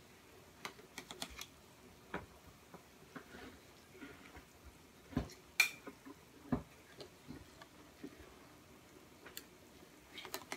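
Light, scattered clicks and clinks of a ladle knocking against a glass bowl and the stockpot while foam is skimmed off boiling beef stock, the loudest a little past five seconds.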